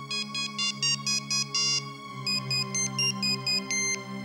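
Mobile phone ringing with an incoming call: a ringtone melody of short electronic beeping notes in two phrases, about four notes a second. Soft background music plays underneath.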